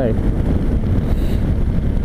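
Steady wind rush on the microphone over the running engine and road noise of a 2004 Suzuki V-Strom 650 V-twin motorcycle on the move.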